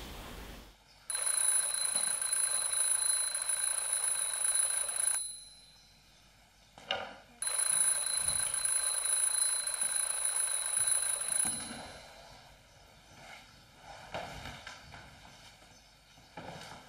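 Electronic ringtone sounding in two long, steady, high-pitched rings of about four seconds each, with a pause of about two seconds between them, then stopping. A few faint soft noises follow near the end.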